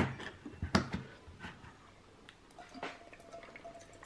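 Pull-tab lid of a small metal can of sausages being popped and peeled open: a sharp click at the start, another just under a second in, then a few faint ticks.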